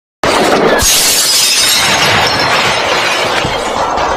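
Intro sound effect of something shattering: a loud crash that begins abruptly just after the start and slowly fades away.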